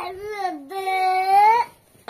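A high voice singing a drawn-out phrase. A short gliding note is followed by one long held note, which stops about three-quarters of the way through.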